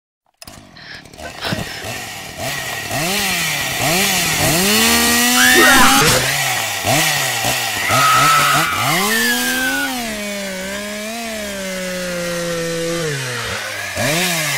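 Chainsaw engine revving over and over, its pitch swelling up and dropping back in quick pulses, with a few stretches held at a steady high rev, the longest of them in the last few seconds.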